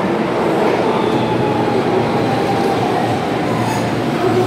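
Keihan 13000-series electric train pulling into an underground station platform, its wheel and motor noise steady and loud as the cars pass close by.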